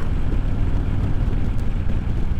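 Harley-Davidson Road King Special's V-twin engine running steadily at highway cruising speed, with wind and road noise.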